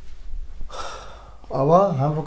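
A man's quick, audible intake of breath about halfway through, followed by his voice starting up with a drawn-out, gliding syllable near the end.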